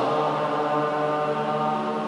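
Music with voices holding a long, steady final chord that begins to fade near the end.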